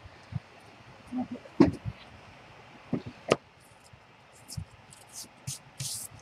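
Handling craft materials on a table: a few light knocks, then short, scratchy strokes in the last second and a half, a foam ink sponge rubbed along the edges of paper.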